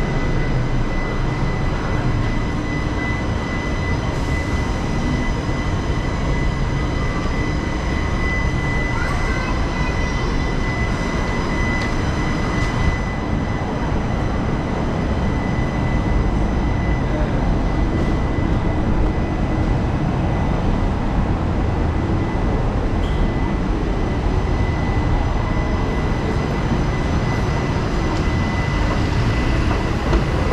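Steady city and shopping-centre ambience, mostly a low rumble of traffic and building noise with no distinct events. A faint, constant high whine runs through it.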